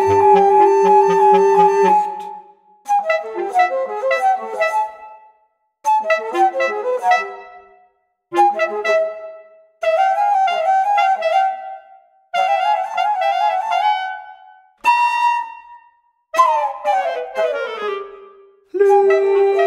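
Bass flute and bass clarinet playing together in a contemporary chamber-music passage: about eight short phrases of quick runs, each broken off abruptly by a brief silence.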